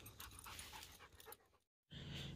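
Faint panting of a Rottweiler as it trots along, cutting out to dead silence near the end.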